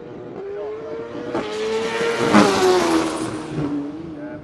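Racing motorcycle engine at high revs passing by: its note holds and climbs slightly as it approaches, is loudest with a rush of noise a little past halfway, then drops in pitch as it goes away.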